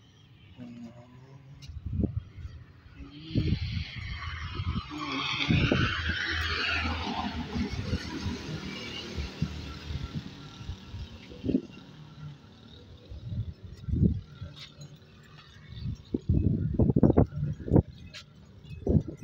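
A passing road vehicle, its noise swelling over a few seconds and then fading away, over a low rumble. A run of loud knocks and thumps comes near the end.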